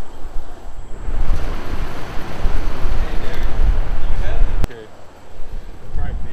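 Wind rumbling on the microphone, a dense low buffeting that swells about a second in and breaks off with a sharp click about three-quarters through.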